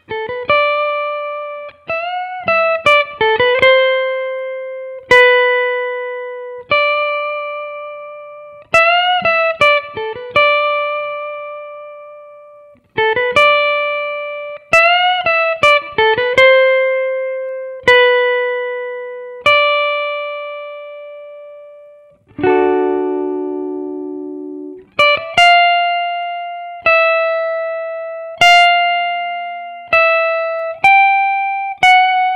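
PRS electric guitar playing a slow single-note solo line, with notes left to ring out and fade and with upward string bends. The same short bent phrase comes three times. About three-quarters of the way through a chord rings, followed by a few more held notes.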